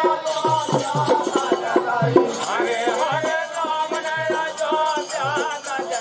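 Live Rai folk music: a steady beat of hand-drum strokes with jingling rattles and a wavering sung or played melody over it.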